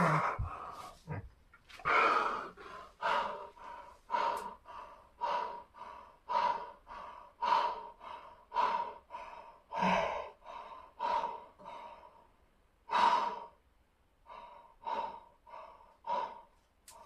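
A man's hard, rhythmic breathing while exercising: short forceful breaths about once a second, a little louder at the start and again near the end.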